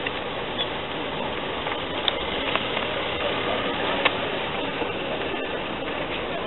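Steady outdoor background noise, with a few short clicks about two and four seconds in.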